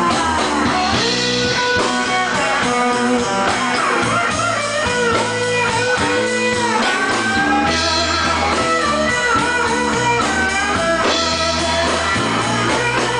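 Live blues band playing an instrumental passage: electric guitar lead with bent notes over bass guitar and drum kit.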